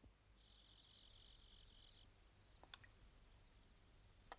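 Near silence, with a faint high trill for about a second and a half, then a faint clink of a metal spoon against a soup bowl.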